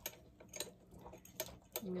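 A few light, irregular metallic clicks as a wrench is fitted onto an axle bolt on a dog wheelchair's metal frame.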